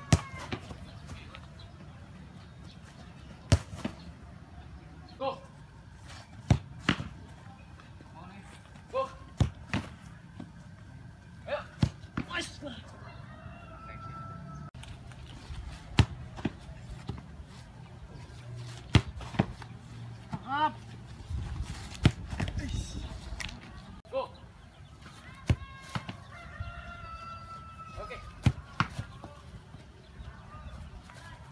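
Footballs being kicked hard at a goalkeeper, about a dozen sharp thuds at irregular intervals of a few seconds, some with the ball striking gloves or the ground.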